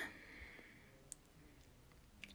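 Near silence: room tone, with a few faint clicks, one about a second in and a couple near the end.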